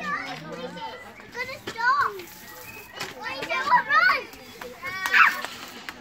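Young children squealing and calling out excitedly, with several high rising shrieks; the loudest comes about five seconds in.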